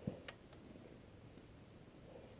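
Near silence: faint background hiss with two faint clicks in the first half second.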